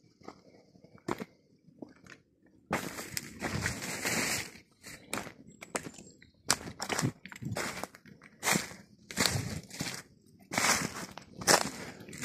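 Footsteps crunching through dry fallen leaves and twigs on a steep woodland slope, in irregular steps. They start about two and a half seconds in, after a near-quiet start.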